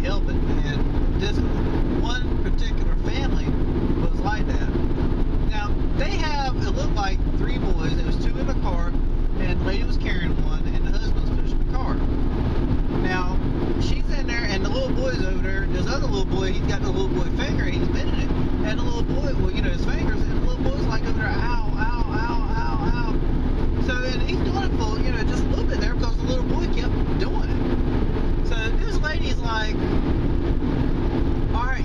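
Steady road and engine noise inside a moving car's cabin, a constant low drone, with indistinct voices over it.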